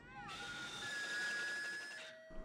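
Electronic logo-sting sound effect: a short wavering glide that falls away, then a few thin, steady high tones held over a faint hiss.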